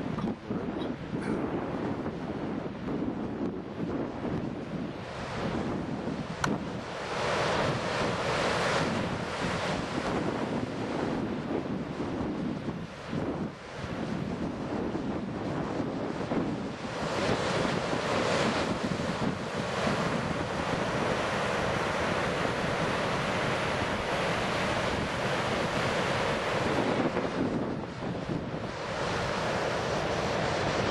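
Surf breaking on a rocky shore, with wind buffeting the microphone; the wash swells and eases in long surges.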